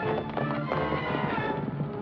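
Orchestral film score playing over the hoofbeats of two horses coming along a dirt trail at a steady gait.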